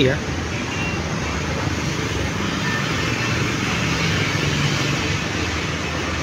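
Steady street traffic noise from cars and motorbikes passing on a city road.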